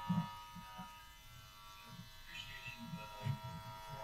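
Faint, muffled voice of an audience member speaking away from the microphone, over a steady electrical hum.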